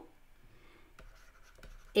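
Faint scratching of a stylus writing on a drawing tablet, with a couple of light taps.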